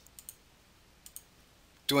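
Near silence broken by a few faint, short clicks: a cluster near the start and two more a little past one second in. A man's voice begins speaking right at the end.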